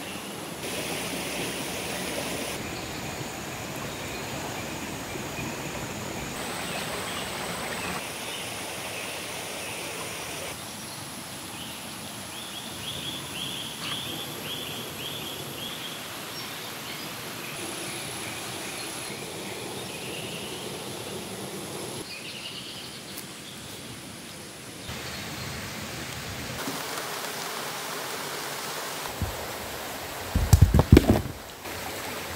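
Outdoor ambience of a flowing stream with steady high insect tones and a rapid chirping trill around the middle. The background shifts abruptly every few seconds.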